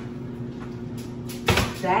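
Kitchen wall-oven door shut with a single loud thump about one and a half seconds in, once a casserole dish has gone in to bake, over a low steady hum.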